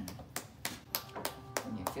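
One person clapping their hands in a steady run, about three claps a second.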